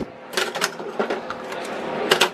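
A few sharp plastic clicks and clacks, two close together about half a second in and fainter ones after, as the pod chamber of a BUNN single-cup coffee brewer is opened and a coffee pod is set in.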